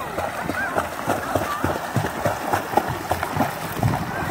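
A child's feet kicking and splashing in lake water while he rides a bodyboard: a quick, irregular patter of small splashes.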